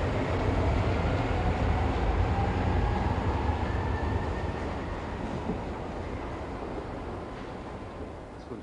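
Brussels metro train running through the station: a heavy low rumble with a faint motor whine rising in pitch as it gathers speed. The rumble slowly fades away.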